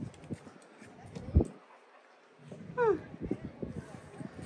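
A few faint clicks and one sharp thump about a second and a half in, then a brief quiet stretch.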